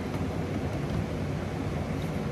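Steady background hum with an even hiss, without distinct knocks or clicks.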